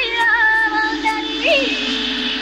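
Film song vocal: a high voice, plausibly a woman's, singing a wordless ornamented melody with pitch slides, then a long held note with a short upward flourish near the end.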